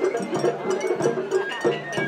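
Japanese festival-float hayashi music: a small metal hand gong and drums struck in a quick, steady beat, with a high bamboo flute melody over them.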